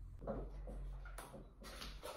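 Phone handling noise as the recording phone is moved and propped up: faint rubbing and shuffling with a brief knock a little over a second in.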